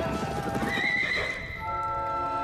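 Horses neighing and hooves clattering, with a drawn-out whinny about a second in. Held music chords come in near the end.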